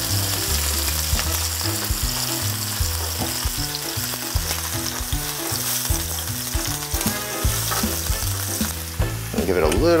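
Maitake (hen-of-the-woods) mushrooms frying in olive oil in a pan, a steady sizzle, while the pieces are turned over with a spatula.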